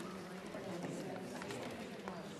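Indistinct murmur of many people talking quietly among themselves in a large chamber, with a few light clicks and knocks.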